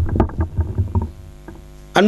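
Microphone handling noise, low bumps and rumbles as a hand is taken off a stand-mounted microphone. From about a second in, a steady electrical hum from the sound system.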